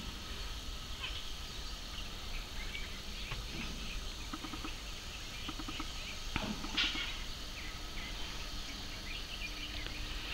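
Outdoor garden ambience: a steady low background with scattered short bird chirps, one slightly louder call about two-thirds of the way through.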